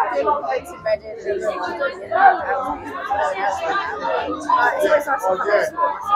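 Speech: a woman talking, with background chatter.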